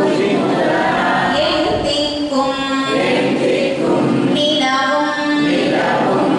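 A woman singing devotional verses into a microphone, in long held phrases that rise and fall in pitch.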